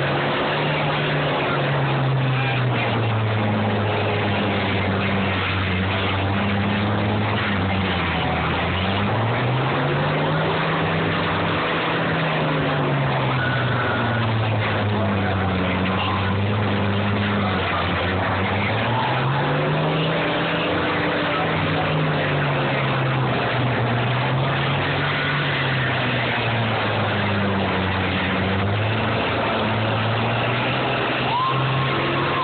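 Diesel engines of combine harvesters running under load in a demolition derby, their pitch rising and falling repeatedly as they rev up and down, with a dense, rough noise over them.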